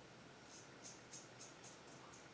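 Faint scraping of a Gem Jr single-edge safety razor cutting through lathered stubble on the cheek, in a quick run of short strokes, about four a second, starting about half a second in.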